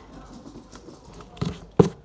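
Clear tape being pressed onto a cardboard box, with two sharp slaps of a hand on the cardboard about one and a half seconds in, the second the louder.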